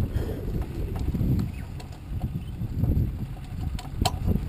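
Wind buffeting the microphone of a wing-mounted camera, an uneven low rumble that rises and falls.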